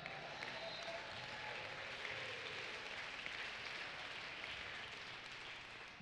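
Congregation applauding, faint and distant: an even patter of many hands clapping that slowly dies away.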